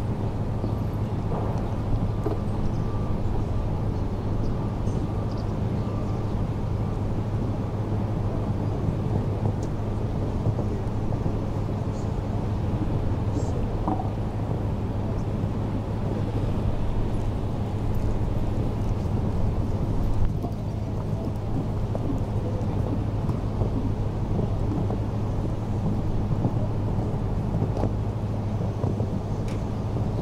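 Steady outdoor rumble and hiss, typical of wind on the camera microphone, over a constant low hum; no distinct event stands out.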